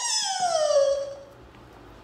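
A sound effect from an animated intro: a single pitched tone glides steadily downward and fades out over about a second.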